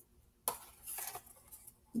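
A small dry-erase whiteboard and marker being handled: a sharp knock about half a second in, then a few softer rubs and knocks.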